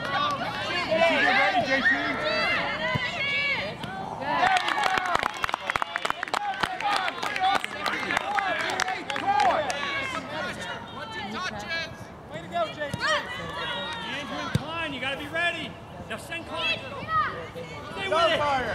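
Many voices calling and shouting across an outdoor soccer field, with no clear words: young players and sideline spectators during play. A flurry of sharp clicks comes about four seconds in.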